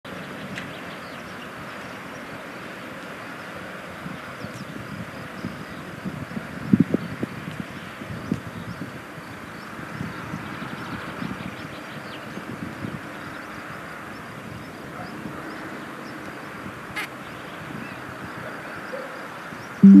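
Outdoor ambience at a white stork nest: steady background noise with faint distant bird chirps and irregular soft knocks about six to nine seconds in. Right at the end a loud low tone starts suddenly and begins to fade.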